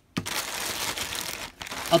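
Clear plastic bag crinkling steadily as hands grip and handle it, after a short knock at the start, with a brief pause about one and a half seconds in.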